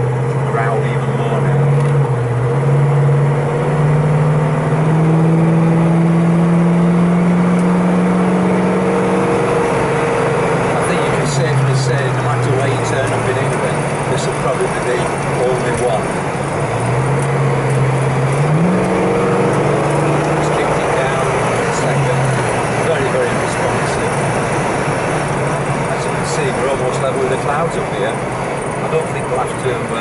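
1970 Pontiac GTO Judge's V8 with Flowmaster exhaust, heard from inside the cabin while driving. The engine note climbs steadily for several seconds as the car pulls away, drops back, rises again briefly, then sinks under steady road and tyre noise for the last third.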